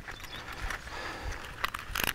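Light clicks and rattles of a DK-1 wire pocket gopher trap being handled and set, its spring-steel wire tapping and scraping, with a few sharper clicks close together near the end.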